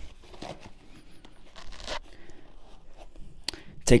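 Fabric rustling and light scraping as a padded divider and a camera lens are moved around inside a nylon camera sling bag, with a few soft knocks.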